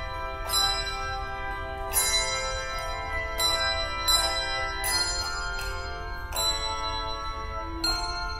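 Handbell choir playing, notes and chords struck about once a second and each left to ring into the next.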